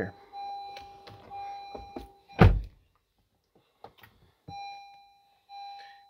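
A car door shut with a single heavy thunk about two and a half seconds in. Before and after it, a steady electronic chime tone sounds from the 2019 Honda CR-V's dashboard.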